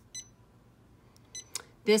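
Touchscreen key beeps of a Janome Memory Craft 550E embroidery machine as its on-screen buttons are pressed: two short, high beeps about a second apart.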